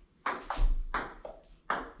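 Table tennis ball bouncing on the table and striking paddles in a fast rally of sharp clicks, about five in two seconds, during a feeding drill of short forehand pushes.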